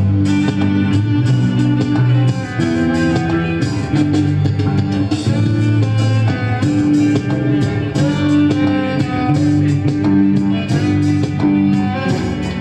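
Instrumental band music: a bowed cello carries the melody in long held notes over guitar and percussion accompaniment.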